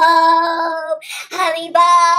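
A high voice singing long held notes, one running about a second and a new note starting shortly after.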